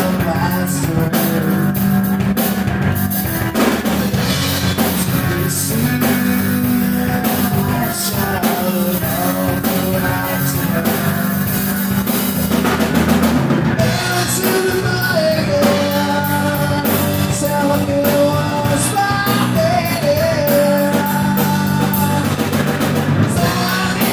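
Live rock band playing, with a drum kit, electric guitar and bass, and a male lead vocal sung over it for much of the second half, heard from across an open-air bar.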